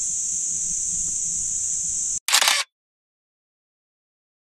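A steady, high-pitched drone of insects, broken about two seconds in by a single camera-shutter click, the loudest sound here. The sound then cuts off completely.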